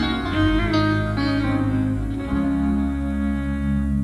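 Live band playing an instrumental passage of a slow ballad: plucked guitar notes at first, then a held chord over a steady bass from about two seconds in.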